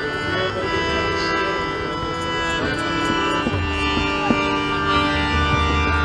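Harmonium playing sustained chords, changing to a new chord about two and a half seconds in, as a new kirtan leader begins his kirtan.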